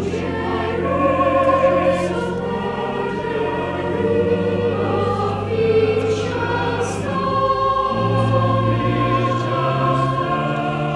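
Cathedral choir singing with pipe organ accompaniment, the organ's low held notes changing every few seconds under the voices.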